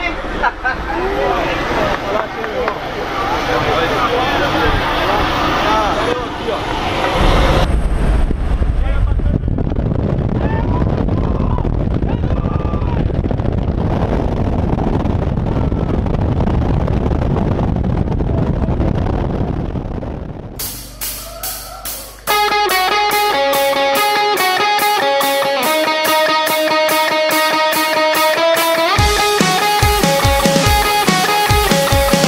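Jump plane's engine heard from inside the cabin, with voices and laughter over it; the engine noise grows louder and steadier about seven seconds in. From about 22 seconds, music with guitar and a steady beat takes over.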